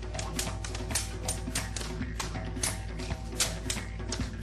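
Georgian folk dance music with a steady low drone and held tones, overlaid by rapid, irregular sharp clacks from the dancers, several a second.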